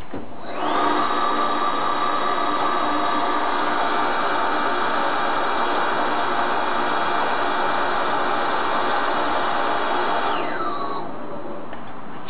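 Baileigh RDB-250 electric rotary draw tube bender running through a single bend, wrapping a tube around its die. The motor and gear drive spin up about half a second in, whine steadily for about ten seconds, then wind down with a falling pitch as the bend nears 180 degrees.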